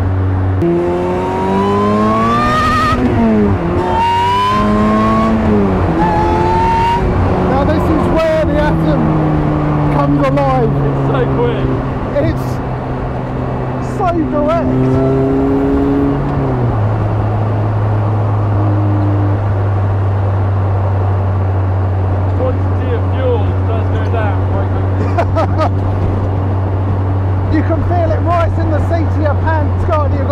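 Supercharged 2.0-litre Honda four-cylinder of an Ariel Atom 3.5 accelerating hard through the gears: the pitch climbs and drops at each of three quick upshifts in the first seven seconds. It then eases off gradually and settles into a steady low drone at cruising speed for the second half.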